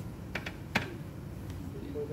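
A few short, sharp clicks: two close together about a third of a second in, a louder single click just before the one-second mark, and a faint one shortly after.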